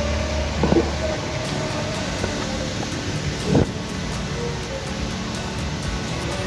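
Background music with held, sustained notes, and two brief louder swells, one about a second in and one a little past the middle.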